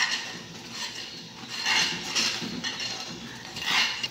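A metal utensil scraping and clinking against a metal saucepan while a thickening custard cream is stirred, in a handful of uneven strokes.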